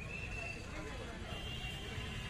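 Busy street ambience: a steady low rumble with people's voices in the background and faint high-pitched calls, near the start and again in the second half.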